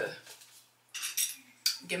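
Light clinks of small hard objects: a short cluster about a second in, then one sharper click.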